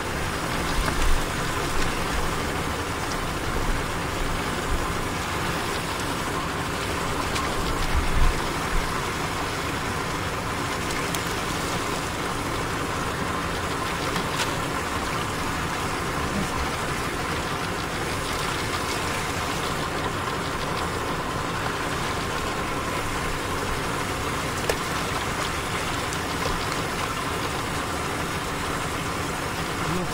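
A boat motor idling steadily, with a few low knocks from handling the nets near the start.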